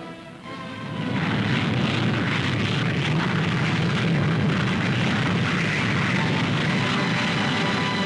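North American F-100 Super Sabre jet taking off: a loud, steady engine roar swells in about a second in and holds, with orchestral music playing underneath.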